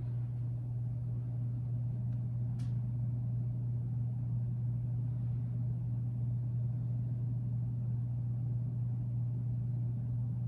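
Steady low electrical or motor hum that runs unbroken, with a faint short click about two and a half seconds in.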